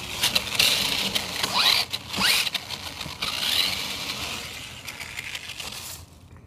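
Radio-controlled toy car driving over dry fallen leaves: rustling and scraping with short rising motor whines, fading as it moves away near the end.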